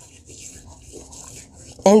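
A hand scrubbing the skin of a foot with a gritty coffee-ground, lime and baking soda paste: faint, irregular rasping strokes.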